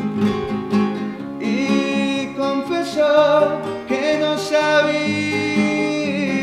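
Nylon-string classical guitar being played, with a man singing a slow melody over it from about a second and a half in.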